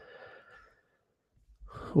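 A pause between sentences: a faint breath out just after the last word, then near silence, then a faint breath in shortly before speech resumes.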